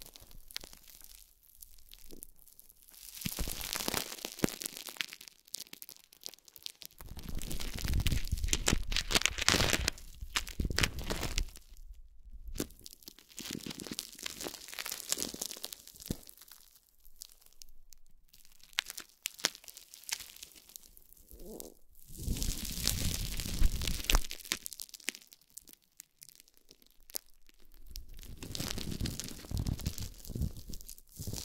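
Thin plastic wrap crinkling and crackling under fingertips as it is pressed, rubbed and squeezed into a bundle, in bouts a few seconds long with short pauses between. Some bouts carry a deep rubbing rumble as the wrap is worked close to the microphones.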